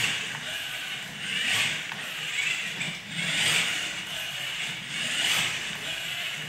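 Balanduino balancing robot's two geared DC motors whirring as it drives and turns, swelling and easing about four times as the speed changes.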